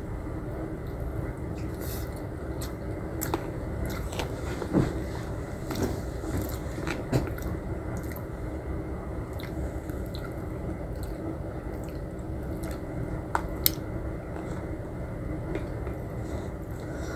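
Close-up chewing and eating sounds of a person working through a boxed meal of noodles and rice, with occasional short clicks of a plastic spoon against a plastic food tray, over a steady background hum.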